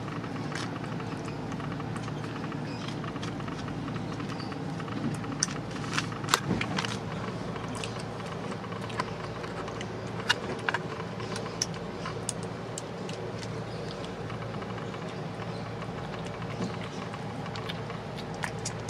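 Steady outdoor background hum, like distant traffic, with scattered faint clicks and taps, a few in a cluster about five to seven seconds in and again around ten to twelve seconds.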